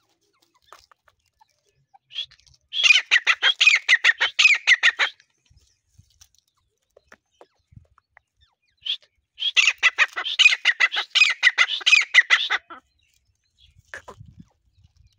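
Grey francolin (grey partridge, teetar) calling: two loud bouts of rapid, evenly repeated high notes, about seven a second and each bout two to three seconds long, each opened by a short single note.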